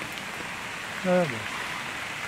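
Heavy rain falling steadily, an even hiss, with one short spoken word about a second in.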